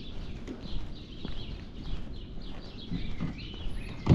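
Small songbirds chirping and singing in the trees, many short quick notes throughout, with soft footsteps on paving underneath.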